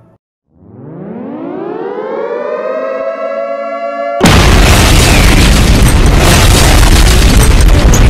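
An air-raid siren winding up, rising in pitch and then holding steady. About four seconds in, a sudden, very loud explosion cuts in and stays loud.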